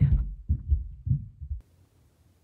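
Several low, dull thumps over about a second and a half, irregularly spaced, then near silence.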